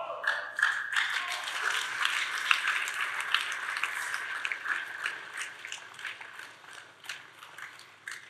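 Congregation applauding, a dense patter of hand claps that dies away near the end.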